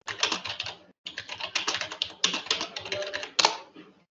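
Fast typing on a computer keyboard, a dense run of key clicks that stops briefly about a second in, then carries on until just before the end.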